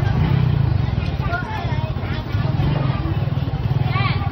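A motorbike engine running steadily close by, a low, even drone, with people talking in the background.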